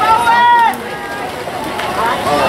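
A spectator's high-pitched yell: one long call held for under a second and falling off at the end, followed by quieter crowd voices.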